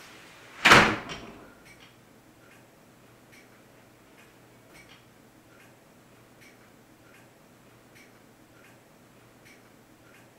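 A wooden front door shuts with one loud thud under a second in. After it, a grandfather clock ticks slowly and evenly, a little faster than once a second.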